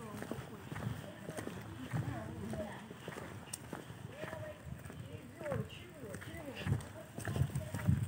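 Footsteps on an asphalt path at a walking pace, with people talking faintly nearby.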